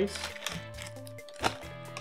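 Quiet background guitar music under the crinkle of a cookie package's plastic wrapper, with one sharp plastic click about a second and a half in as a cookie is taken from the tray.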